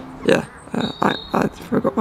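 A man laughing in short, breathy bursts, no clear words.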